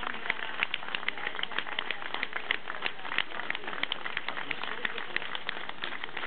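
Crowd applauding: many hands clapping steadily, with single sharp claps standing out.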